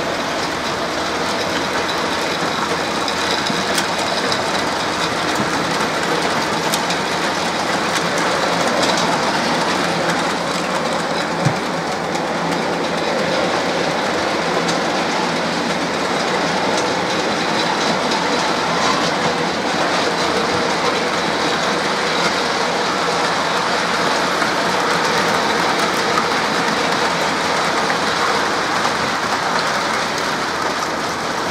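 00 gauge model trains running on the layout: a steady whir and rattle of wheels on the track, with light clicks over rail joints and points and one sharper click about eleven seconds in.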